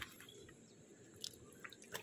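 Faint drips and small splashes of water as a hand rinses a stone in shallow river water, with a short click at the very start.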